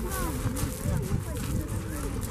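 Indistinct voices of several onlookers chatting, with no clear words, over a low rumbling background.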